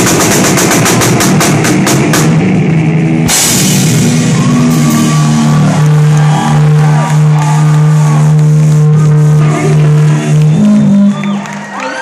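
Live rock band with distorted electric guitar and a drum kit, loud and close on a phone recording: rapid drum hits at first, then a crash about three seconds in and a long held, ringing guitar chord with scattered drum hits, dying away near the end.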